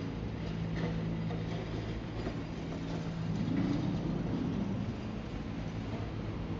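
Street traffic: a motor vehicle's engine running with a steady low hum that swells for about a second midway, with faint footsteps ticking along.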